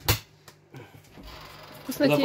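Pull-ring lid of a sardine tin snapping free of the can rim: one sharp metallic click just after the start, then faint handling noise.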